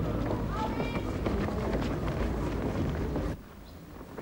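Wind rumbling on the microphone outdoors, with indistinct voices in the background. The sound cuts off suddenly a little over three seconds in, leaving a quieter background.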